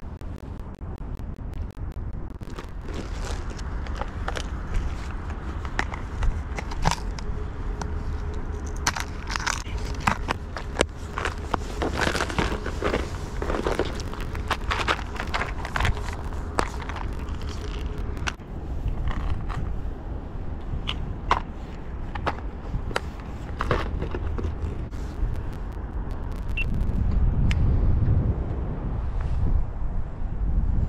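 Wind rumbling on the microphone, with many scattered clicks, taps and rattles from fishing tackle being handled, including a plastic lure box. The wind swells near the end.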